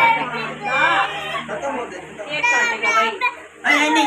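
Several people talking at once, children's voices among them.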